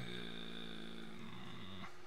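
A man's drawn-out, steady vocal hesitation sound, a long low 'uhhh' held for about two seconds that stops just before the end.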